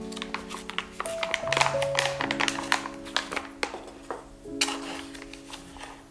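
Stiff paper flour bag crinkling and crackling in the hands as it is peeled open. The crackles come thick and fast at first, thin out, and return in a short flurry near the end. Background music with held notes plays throughout.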